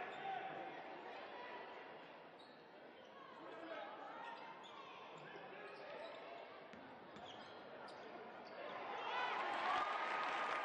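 Basketball game in an arena: a ball dribbling on the hardwood court over a murmur of crowd voices, the crowd getting louder near the end.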